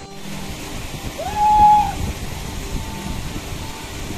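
Shallow stream running over rocks, heard as a steady rush, under background music. A single held tone that rises into it is the loudest thing, about a second and a half in.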